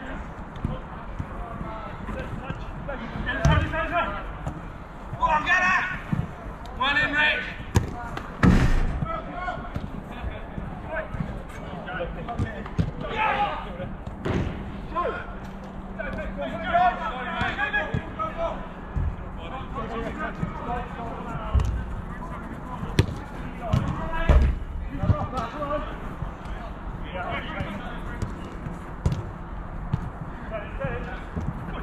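Players calling out during a small-sided football game, with scattered sharp thuds of the ball. The loudest thud comes about eight and a half seconds in.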